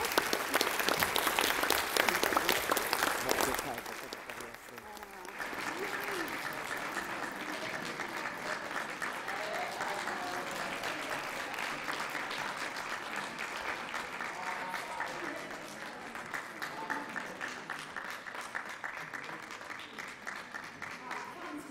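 Senators and the public gallery applauding at the close of a speech in the chamber, with mixed voices talking over it. The clapping is loud for the first few seconds, drops off sharply about four seconds in, then carries on more softly.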